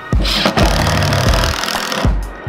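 A Makita cordless impact driver hammers a screw into a wooden floorboard: a rapid rattling run that starts just after the beginning and stops about a second and a half in, under background music.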